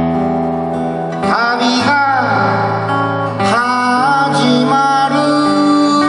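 A man singing with his own acoustic guitar accompaniment, live; his voice rises into sung phrases about a second in and again near four seconds, over held chords.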